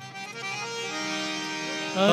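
Harmonium playing held notes as the instrumental introduction to a devotional bhajan, growing gradually louder.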